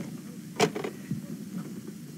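A single short sharp click about half a second in, against a quiet, steady background.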